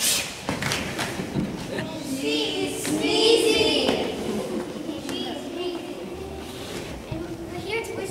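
A sharp thump at the very start, then several children's voices calling out in high, wordless shouts, loudest about two to four seconds in.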